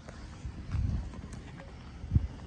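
Low wind rumble buffeting a phone's microphone, swelling once about a second in.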